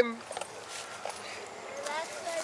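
A man's voice cuts off at the very start, followed by a low outdoor background with faint, distant voices.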